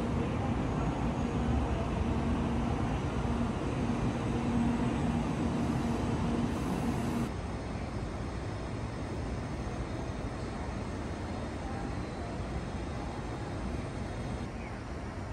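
Steady city traffic noise over a construction site. A low steady hum runs through the first half and stops suddenly about seven seconds in, where the background drops a little in level.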